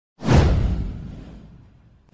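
A whoosh sound effect from a video intro, with a heavy deep low end, swelling in suddenly about a quarter second in and fading away over more than a second.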